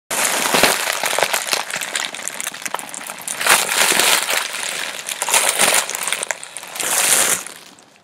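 Foil (Mylar) balloon crinkling and crackling in the hands as someone sucks the gas out through its neck, in irregular surges that fade out near the end.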